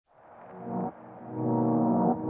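Instrumental intro music: muffled, sustained low chords fading in from silence. A short swell breaks off just before the one-second mark, then a louder held chord follows.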